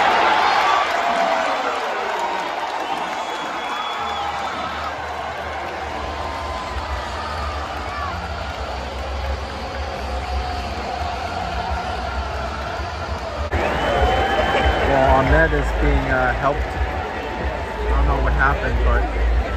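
Football stadium crowd: loud cheering at the start that eases into steady crowd chatter. About two-thirds of the way through, the sound changes abruptly to louder crowd noise with voices.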